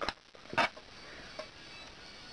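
Quiet handling of a small throwing knife turned over in the hand: a light click at the start, a short rustle about half a second in and a faint tick later, over low room hiss.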